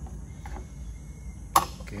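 A single sharp knock about one and a half seconds in as the bulb is set down on the plastic platform of a digital kitchen scale, over a low steady background hum.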